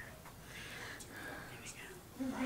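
Faint whispered speech.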